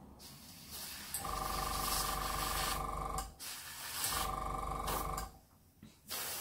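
Airbrush run from a small compressor, blowing air in two bursts, the first about two seconds long and the second about one second: a steady motor hum with air hissing from the nozzle, stopping between bursts. The air is being used to push wet acrylic paint across the surface.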